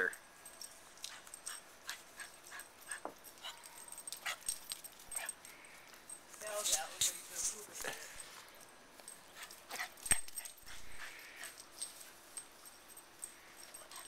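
A Boston terrier giving a few brief whines about halfway through, among scattered faint clicks and rustles.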